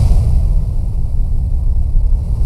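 A loud, deep rumbling sound effect with a faint hiss above it, cutting in abruptly in place of the organ music.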